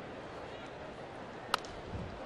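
A single sharp crack of a baseball bat fouling a pitch straight back, about one and a half seconds in, over a steady murmur of a ballpark crowd.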